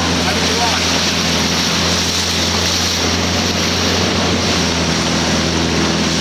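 A boat's motor running steadily with a low, even hum, under a constant wash of wind and water noise.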